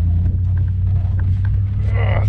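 SUV engine running hard with a steady low rumble under load as the vehicle tries to drive out of soft sand in which it is stuck.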